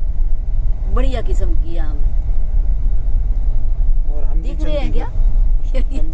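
Steady low road and engine rumble of a car in motion, heard from inside the cabin. Short stretches of people talking come in about a second in and again around four to five seconds in.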